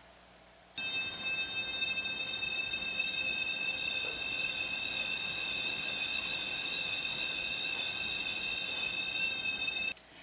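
Electronic tuner sounding a steady high-pitched reference tone with overtones while it is whirled in a circle on a string. The tone starts about a second in and cuts off just before the end. Its pitch shifts higher as the tuner swings toward the listener and lower as it swings away: the Doppler effect.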